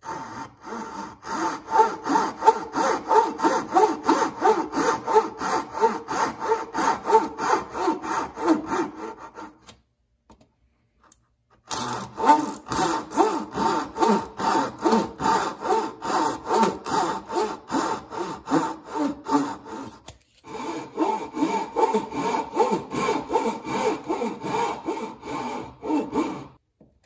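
A backed Japanese pull saw (Suizan, 0.2 mm kerf) cuts box-joint kerfs into a hardwood board by hand in quick, even strokes, about three or four a second. The strokes come in three bouts, stopping for about two seconds around ten seconds in and briefly again around twenty seconds in.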